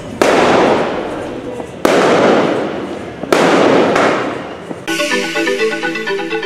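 Fireworks going off: three sudden bursts about a second and a half apart, each fading away. Near the end, a news programme's theme music starts.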